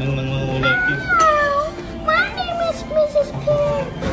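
A young child's high-pitched wordless vocalising, sliding up and down in pitch in playful squeals and sung tones.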